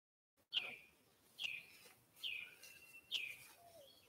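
A bird singing: a series of four clear whistled notes, each sliding downward, about one a second, quieter than the preacher's voice.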